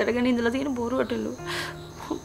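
A woman speaking for about the first second, then a short breathy sound, with a thin steady high-pitched tone in the background throughout.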